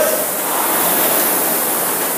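Fan flywheels of indoor rowing ergometers spinning as they are rowed, a steady even whoosh.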